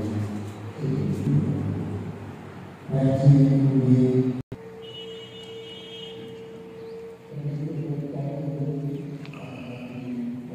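Chanting voices, cut off abruptly about halfway in, followed by one steady held tone lasting a couple of seconds, then voices again.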